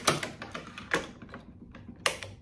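Racquet stringing machine's metal string clamps clicking as they are handled and set on the strings: two sharp clicks about a second apart, with lighter taps between.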